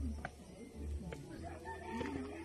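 A rooster crowing, with held pitched calls in the second half, over low rumbling noise on the microphone.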